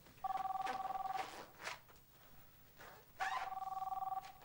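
Telephone ringing with an electronic ring on two steady pitches. Two rings of about a second each come about three seconds apart, the second starting near the end.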